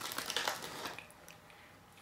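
A person biting into a chocolate chip cookie and chewing it, with small irregular crunches in the first second that then fade away.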